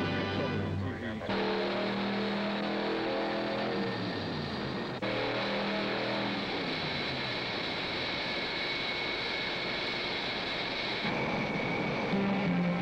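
Jet engine running: a steady high whine over a loud rushing noise. It comes in abruptly about a second in, with background music over its first part, and gives way to music near the end.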